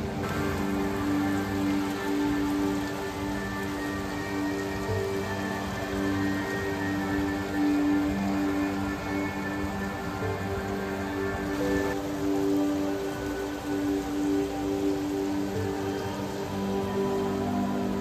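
Music with long, sustained chords.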